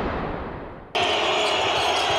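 A broadcast intro whoosh fades out, then about halfway through the sound cuts suddenly to a basketball arena: a steady crowd din with faint ball bounces.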